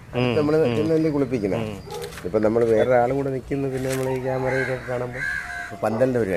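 A man talking in Malayalam, with short pauses between phrases.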